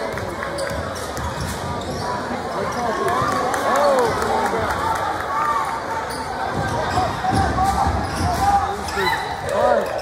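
A basketball dribbling on a hardwood gym floor and sneakers squeaking in short chirps as players run the court. Steady crowd chatter runs underneath throughout.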